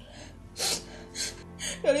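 A woman sniffling and gasping as she cries, three short breathy sniffs about half a second apart, over soft background music.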